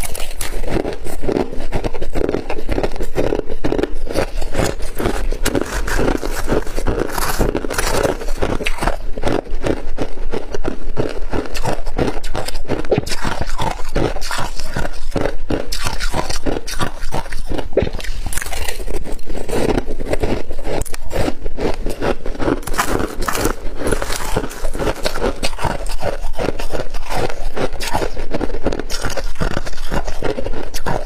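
Close-miked crunching and chewing of freezer frost and crushed ice, dense and continuous, with a metal spoon scraping through the ice.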